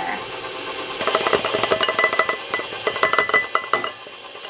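KitchenAid stand mixer running with its flat beater turning cream cheese frosting and powdered sugar in a stainless steel bowl: a steady motor whine, with rapid rattling and clicking from about a second in as sugar is added.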